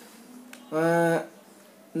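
A man's voice holding one steady, flat-pitched 'aah' for about half a second, a hesitation filler between sentences. The rest is quiet room tone.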